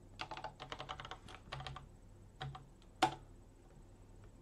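Typing on a computer keyboard: a quick run of keystrokes for about two seconds, then a few separate keystrokes, the last one about three seconds in the loudest.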